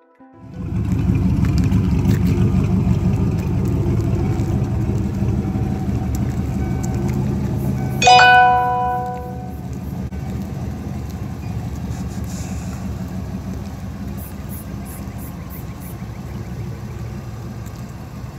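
A 1995 Ford Mustang GT's 5.0 V8 engine running at idle, a steady low rumble. About eight seconds in, a loud ringing tone sounds and dies away over a second or so.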